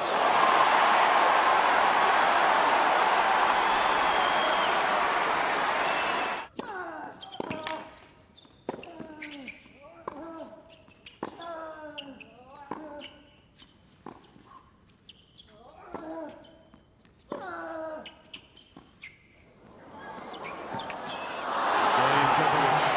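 Tennis crowd cheering and clapping, cut off suddenly. Then a long baseline rally: sharp racket-on-ball strikes, each with the hitting player's short grunt falling in pitch, a dozen or so exchanges. The crowd's applause swells again as the point ends.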